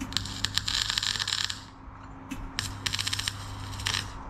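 Electric arc welding on steel plate: a crackling, spitting arc in three bursts. The first lasts about a second and a half, the second is a brief blip, and the third runs about a second and a half to the end, with a low hum under the welds.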